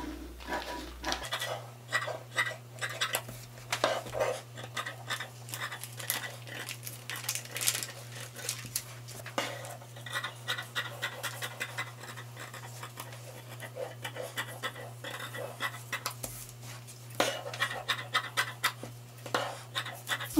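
Dressmaking shears cutting through stretch interfacing with a paper pattern pinned on, a run of irregularly spaced snips and scraping of the blades along the table.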